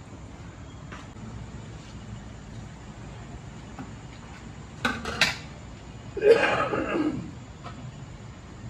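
Stainless ladle and slotted spoon clinking against a hammered brass tray of boiled beef: two sharp clacks about five seconds in, then a louder, rougher sound lasting about a second, over a steady low hum.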